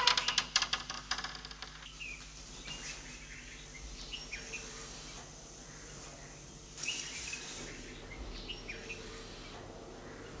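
Birds chirping with short calls at intervals over a faint steady hum. A loud rattling clatter fades out over the first second or so, and a brief rush of noise comes about seven seconds in.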